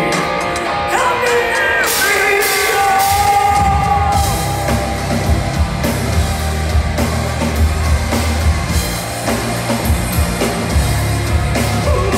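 A live band playing loud through a club PA, heard from within the crowd. A sung vocal line carries the first few seconds, then heavy bass and drums come in about three and a half seconds in.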